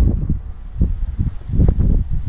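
Wind buffeting the camera's microphone: a loud, gusty low rumble, with a couple of brief knocks about a second in and near the end.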